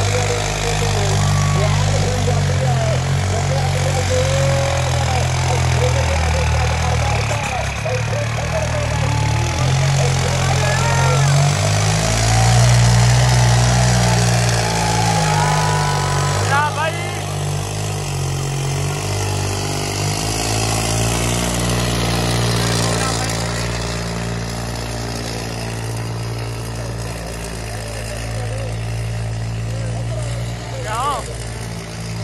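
Diesel tractor engine running hard under load, its pitch shifting as it works, with a crowd's voices mixed in.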